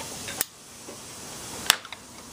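An RJ45 network plug clicking into the jack of an Argent Data simplex repeater box: two short sharp plastic clicks, the second and louder one near the end.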